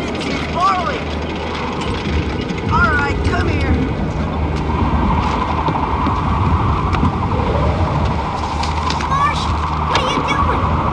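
Steady low rumble of storm wind from a tornado sound effect, with a few short sounds rising and falling in pitch over it.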